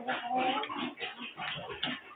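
Chickens clucking, a run of short broken calls.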